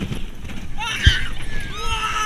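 Roller coaster riders screaming and whooping, with high wavering cries about a second in and again near the end, over wind buffeting the onboard camera's microphone and the rumble of the coaster train on the track. A sharp low thump comes about a second in.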